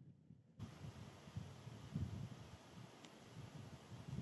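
Faint wind buffeting the microphone in uneven low gusts. A steady hiss comes in suddenly about half a second in.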